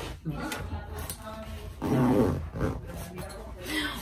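An overstuffed fabric duffel bag rustling and creasing as clothes inside are pressed down and the bag is pushed to be closed, with scattered handling noises and a louder spell of rustling about two seconds in.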